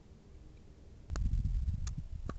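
Low rumbling noise on a handheld camera's microphone, starting about a second in, with a few sharp clicks, after a near-quiet first second.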